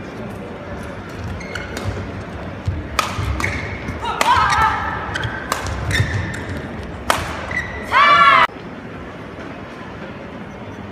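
Badminton rackets striking a shuttlecock in a rally, a sharp hit about every second, with shoes squeaking on the court. A loud, short squeal comes near the end.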